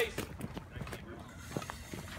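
Faint, irregular footsteps of a firefighter in heavy boots walking on pavement, a few light knocks a second.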